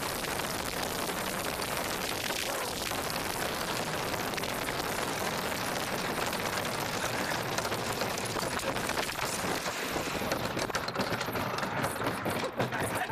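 Bobsled running at speed down an ice track: a steady, loud rushing of the steel runners on the ice and the air going past. Near the end the noise turns choppy and uneven as the sled comes off the fast section and slows into the run-out.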